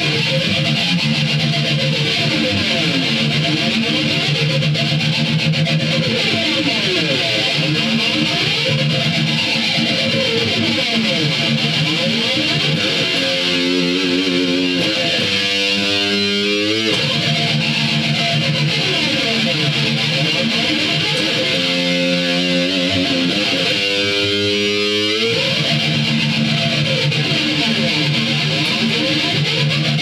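Electric guitar playing fast, heavy metal riffs. It carries on without a break, and two held notes bend in pitch partway through and again later.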